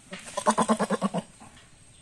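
A goat bleating: one quavering bleat about a second long, broken into quick pulses.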